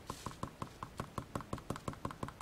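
Quick, light taps of a white-tipped stylus dabbing ink onto glossy cardstock, about six or seven taps a second in an even rhythm.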